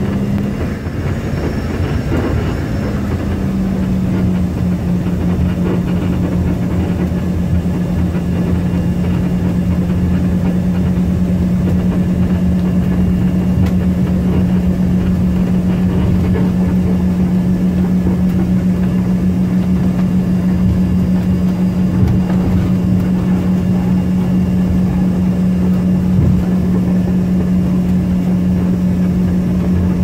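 Cabin noise of an Embraer ERJ-145 taxiing, heard from a seat over the wing: its rear-mounted Rolls-Royce AE 3007 turbofans running at taxi power with a steady low hum over a rumble. There are a couple of light bumps from the wheels in the second half.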